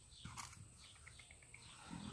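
Near silence: a faint click about a quarter of a second in, then a quick run of about five short, faint, high bird chirps.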